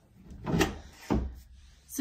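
Closet doors being pulled open by hand: two short knocks about half a second apart.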